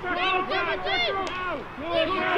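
Several high-pitched young voices shouting and calling over one another, too tangled for any words to come through.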